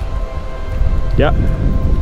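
Wind buffeting the microphone: a loud, low rumble under a short spoken 'yeah'.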